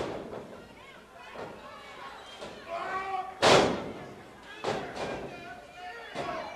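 Heavy thuds of wrestlers' bodies hitting a wrestling ring's mat. One sharp thud comes right at the start, the loudest heavy boom about three and a half seconds in, and a smaller thud a second later, with crowd voices in between.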